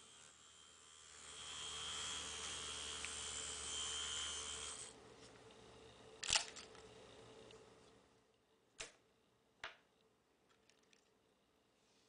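Small battery-powered hobby DC motor running with a steady whir and a thin high whine, cutting off about five seconds in. A few sharp clicks follow, spaced a second or two apart.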